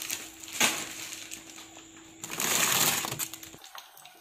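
Frozen food packets in plastic bags being handled in a freezer: plastic crinkling and rustling in two bursts, a brief one about half a second in and a longer one a little past the middle, over a steady low hum. The sound cuts off suddenly near the end.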